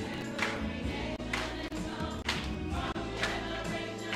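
Church choir of children and adults singing a gospel song over musical accompaniment, with a sharp beat about once a second.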